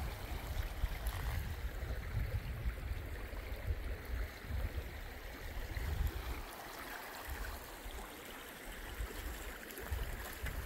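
Shallow mountain creek running over a rocky bed, a steady rushing. A low, uneven rumble sits underneath and eases off partway through.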